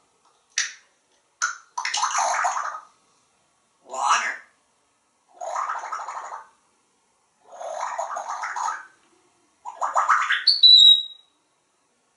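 African grey parrot imitating water: two short clacks, then five gurgling, splashy bursts of about a second each. The last burst ends in a short rising whistle.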